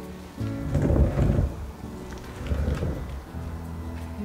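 Two loud low rumbling bursts, about a second in and again near three seconds, from a painted canvas being handled and shifted on a plastic-sheeted table. Soft background music plays under them.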